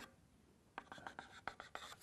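Chalk on a chalkboard drawing a dashed line: a rapid run of about ten short, sharp chalk strokes and taps starting about a second in.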